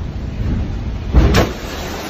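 Low steady rumble inside a ferry's passenger lounge, then a little over a second in, a loud crash as a large wave smashes into the windows.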